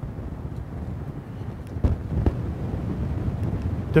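Low rumbling noise on a presenter's microphone in a conference hall, with two short knocks about two seconds in.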